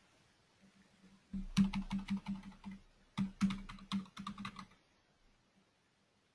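Typing on a computer keyboard: two quick bursts of keystrokes, each about a second and a half long, with a brief pause between.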